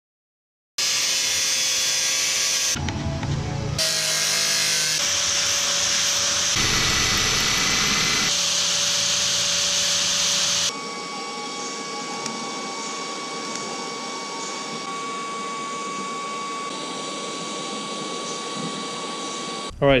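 Angle grinder cutting and grinding sheet metal in a run of short edited clips, starting about a second in. After about ten seconds it drops to a quieter, steady power-tool whine with a clear tone.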